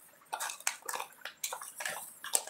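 Irregular light clicks and clatter, several a second, from something handled close to the microphone.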